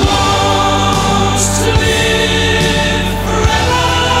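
Boys' choir singing held notes over full orchestral music. The music swells in loudly at the start, with a few drum hits underneath.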